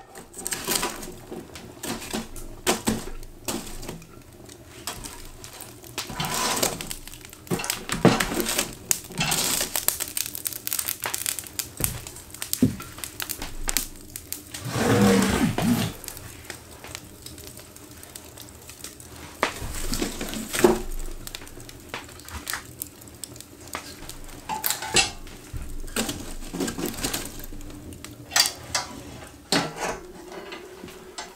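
Irregular metallic clanks, knocks and scrapes from a small steel box wood stove being tended, its door worked and the fire fed, with a louder, longer scrape about halfway.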